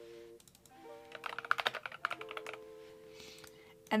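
Typing on a computer keyboard: a quick run of key clicks about a second in, then a few single clicks, over soft background music with held notes.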